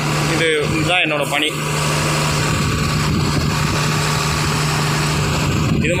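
Engine of a truck-mounted loader crane running steadily, with a low, even hum.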